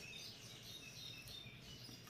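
Near silence: faint room tone with a few short, faint high-pitched chirps.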